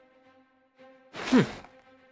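Faint background music with held tones, then about a second in a voice gives one drawn-out 'hmm' that falls in pitch.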